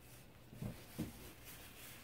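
Faint scraping of a wooden craft stick spreading wet acrylic paint along the edge of a canvas, with two soft low bumps about half a second and a second in.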